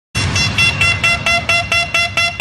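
A horn-like synth stab repeated rapidly, about five short blasts a second, over a low bass bed, opening an electronic dance music intro.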